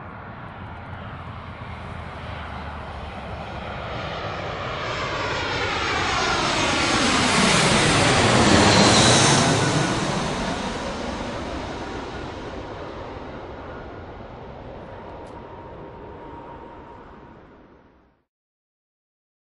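An airplane flying past. Its engine noise grows to its loudest about halfway through, fades away again, and stops abruptly at the very end.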